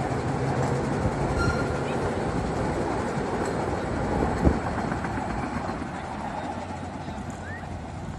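Steam-hauled 381 mm gauge park railway train running along its track, its wheels and cars clattering, growing fainter as it pulls away. A single sharp thump about four and a half seconds in.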